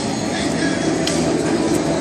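People's voices over a steady, loud rumbling noise.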